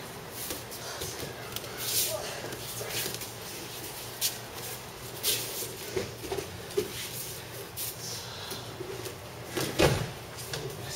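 Aikido training on mats: a string of short thuds, slaps and rustles from falls, footwork and heavy cotton uniforms, with some voices in between. The loudest thud comes just before the end.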